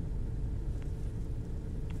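Steady low background rumble in a pause between spoken phrases, with two faint clicks about a second apart.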